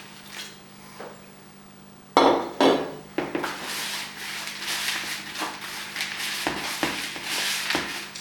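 A glass pitcher set down on a tiled countertop with a sharp knock about two seconds in, after a faint pour of water. Then a hand kneading damp seed-starting mix of peat moss, perlite and vermiculite inside a plastic bucket: continuous scraping, rubbing and crunching with small knocks against the bucket.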